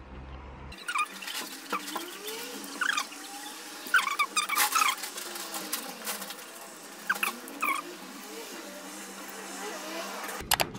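Close-up chewing and mouth sounds from someone eating a soft steamed pork bun: scattered wet clicks, lip smacks and small squeaks.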